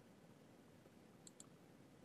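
Near silence with two faint, quick clicks close together about a second and a quarter in: a computer mouse button being clicked.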